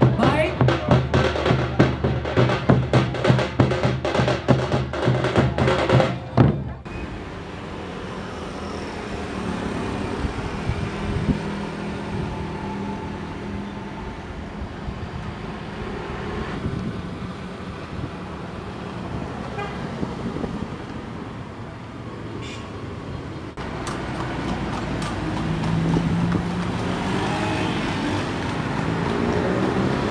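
A troupe of large drums playing a fast, dense beat, which cuts off sharply about seven seconds in. Then street traffic, with vehicles passing close and a car horn tooting.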